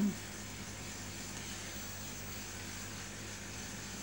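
Steady background hiss with a faint low hum, room tone with no distinct sound.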